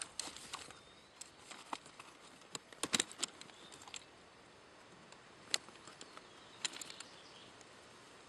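Faint, scattered light clicks and taps of a clevis pin and its ring being fitted through the hold-open bar of a pack frame, with a quick run of clicks about three seconds in and single ones later.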